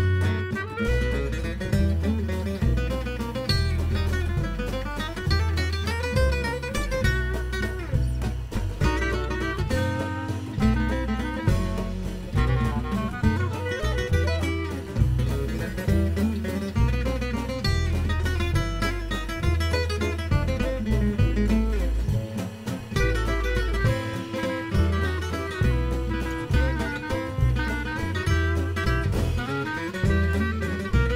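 Gypsy jazz band playing an instrumental, with an acoustic guitar picking the fast melody over a steady upright bass line and rhythm accompaniment.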